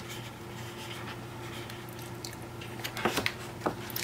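Sheets of 12-by-12 scrapbook paper being handled and turned over, with a few short paper rustles and taps about three seconds in, over a faint steady hum.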